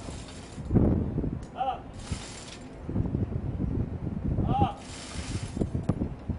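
Hoist pulley squeaking in two short chirps as a Rolling Airframe Missile round is lowered on its chain hoist into the launcher, with two brief bursts of hiss.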